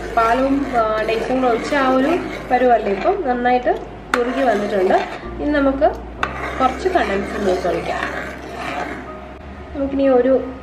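A woman's voice runs throughout, over a steel ladle stirring thick milk payasam in a brass pan, with a few clicks of metal on metal.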